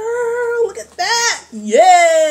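A woman's voice making wordless, sing-song vocal sounds: a held note, a short note that rises and falls, then a loud high note that rises and slides down near the end.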